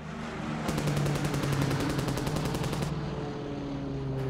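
A machine gun fires a rapid burst of about two seconds over a steady aircraft piston-engine drone. This is the sound design laid over wartime air-combat film.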